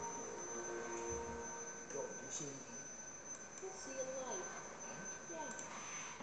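A faint voice played from a television, wavering in pitch, over a thin steady high tone that stops near the end.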